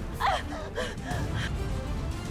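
A woman's short cries and gasps, a few of them in quick succession in the first second and a half, over steady low background music.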